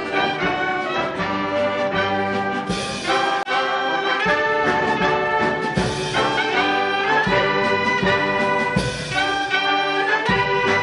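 A military brass band of trumpets, trombones, saxophones and tuba plays an anthem in slow, sustained chords.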